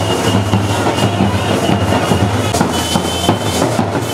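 Loud, continuous drum-led procession music: a dense run of quick beats over a steady low rumble.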